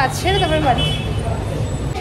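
Steady low rumble of street traffic, with a voice speaking briefly in the first second.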